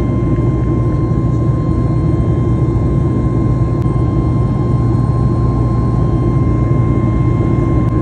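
Steady cabin noise of a passenger airliner in flight, heard from inside the cabin: a constant deep rumble of engines and rushing air with a thin steady whine above it.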